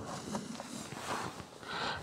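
Faint handling noise: soft clicks and rustling as a hand works the plastic cover of a car's rear-console 12-volt socket.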